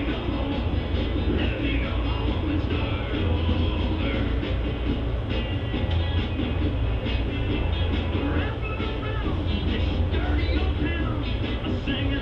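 Background rock-and-roll music playing from a radio, over a steady low hum.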